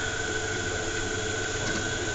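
Three-phase induction motor, coupled to a DC motor and driven by a direct torque control drive, running steadily: a continuous hum with a steady high-pitched tone over it.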